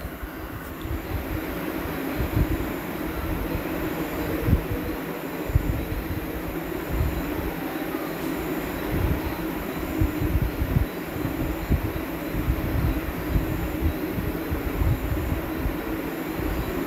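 Steady rumbling background noise with irregular low thumps, swelling over the first two seconds and then holding.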